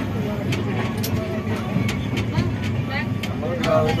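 A passenger train running, heard from inside a coach: a steady rumble with scattered sharp clicks and knocks, under people's voices talking.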